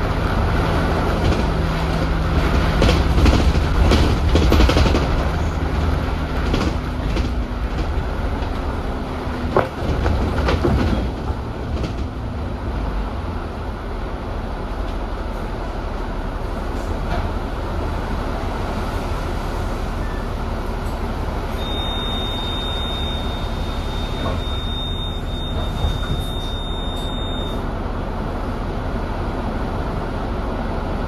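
Inside an Alexander Dennis Enviro400 double-deck bus on the E40D chassis: engine and drivetrain running with body rattles, easing to a steadier, quieter sound about twelve seconds in. A steady high electronic tone sounds for about six seconds in the second half.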